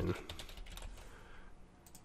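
Faint keystrokes on a computer keyboard as a short word is typed.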